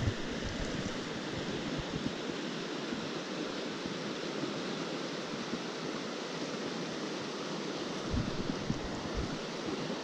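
A small mountain trout stream rushing steadily over a rocky riffle, running high after heavy rain. A few brief low rumbles of wind on the microphone come near the end.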